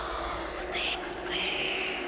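A breathy, whispering voice with no clear words.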